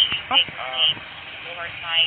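Men's voices speaking in short exchanges over a steady hum of passing street traffic.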